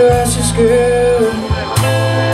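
Live blues band playing: electric guitar, keyboard, bass guitar and drums. A cymbal crash comes at the start and another near the end, over a held melodic note and a steady bass line.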